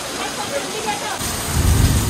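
Heavy tropical downpour: a steady hiss of rain pouring onto the street and the roof edge. The rain grows louder after about a second, and a deep low rumble near the end is the loudest part.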